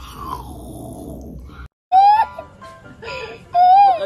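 Brief laughter, then a short silent cut, then a meme sound clip about two seconds in: a child's loud, high wailing cry, rising and falling in bursts, set over music.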